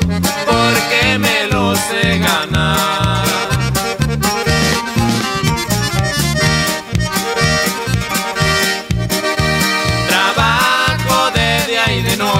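Norteño corrido music: a button accordion plays the melody with quick runs over a steady bouncing bass beat, in an instrumental passage without singing.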